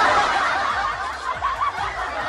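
Many people laughing together without a break, a steady canned-sounding laugh track.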